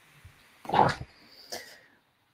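A single short, breathy human vocal sound from a person on the video call, heard through the call audio, less than a second in and brief.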